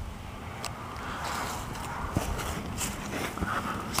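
Faint rustling and handling noise with a few light clicks as a handheld camera is moved down under a trailer, growing slightly louder in the second half.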